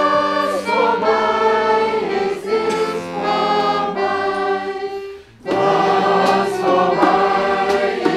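Singing with button accordion accompaniment, sustained notes in several parts. The music drops away briefly about five seconds in, then comes back in full.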